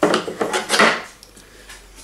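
Small wooden keys being pushed down into tight slots in a plywood box, making a few short wood-on-wood scrapes in the first second.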